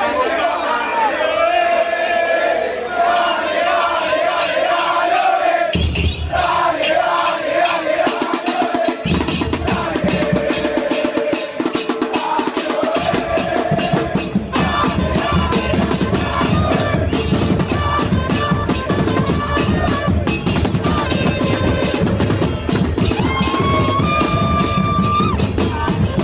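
An Argentine soccer fan group chanting in the stands as a chant gets going: massed male voices sing first, and the bombo con platillo bass drums and snare drums gradually join in with a steady, driving beat from about nine seconds in. Trumpets and a trombone sound among the voices, with a held brass note near the end.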